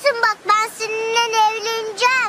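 High-pitched, child-like voice singing: a few quick rising syllables, then one long held note.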